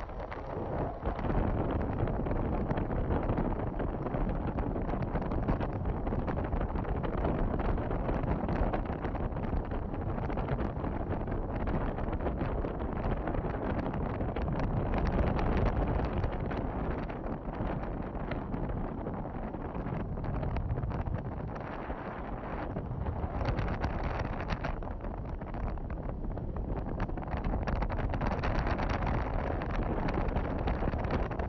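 Steady wind noise on the microphone as the camera moves, a rumbling hiss that eases a little just past the middle.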